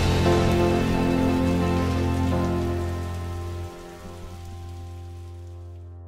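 Held music chords that slowly fade, with the steady hiss of rain laid over them; the rain fades out shortly before the end.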